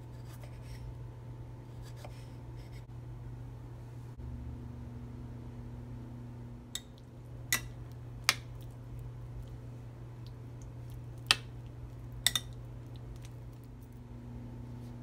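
Kitchen knife cutting strawberries into a bowl of yogurt, with about six sharp clicks of the blade in the second half. A steady low hum runs underneath.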